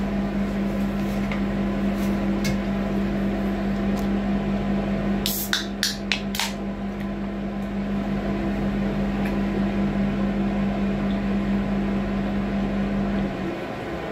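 Steady low hum of a city bus, its engine or ventilation running while parked, cutting off suddenly near the end. A short cluster of sharp clicks about midway through.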